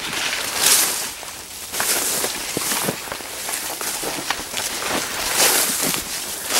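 Corn leaves rustling and swishing against a person pushing through the rows of a cornfield, a swish every second or so with small crackles of leaf on leaf.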